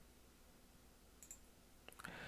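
Near silence with faint computer mouse clicks: a quick pair a little over a second in and a single click near the end.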